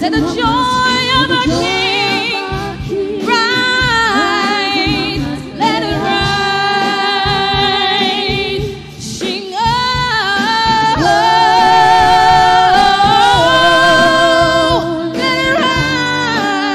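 Women singing gospel praise together into microphones, voices in harmony with long held notes and a wavering vibrato.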